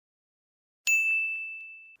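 A single bright, high-pitched ding sound effect about a second in, ringing out and fading for about a second.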